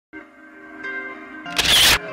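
Channel intro music: a held chord of steady tones, then about one and a half seconds in a loud, short burst of noise, a sound effect laid over the music.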